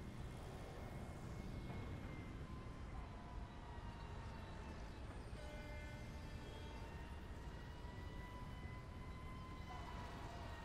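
Faint, steady low rumble with several long, thin high tones held throughout, drifting slowly up and down in pitch, with more tones joining about three and five seconds in.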